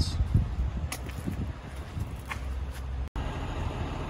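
Low vehicle rumble with a few dull thumps and knocks while a car is being unloaded.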